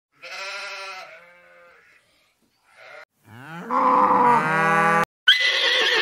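Sheep bleating, a short call and a fainter one, then a long, louder and deeper animal call that is cut off abruptly. A horse whinny with a quavering tone follows near the end.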